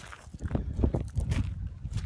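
Footsteps crunching on a gravel path, irregular thumps and short crunches, with a low rumble on the microphone.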